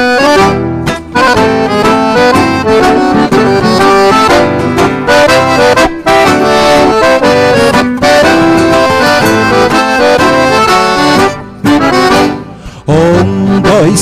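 Accordion leading an instrumental passage of a xote, the gaúcho folk dance tune, in a steady dance rhythm. The music drops away briefly about a second and a half before the end.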